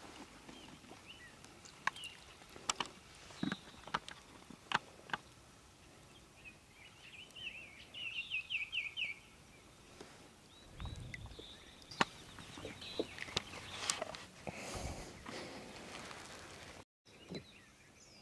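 Quiet lakeside ambience with scattered sharp clicks and knocks of a fish being handled in a landing net. About eight seconds in, a bird gives a short trill of rapid rising chirps, with a couple of low thumps later on.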